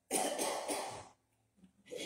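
A person coughing: a loud burst in the first second, then another starting just before the end.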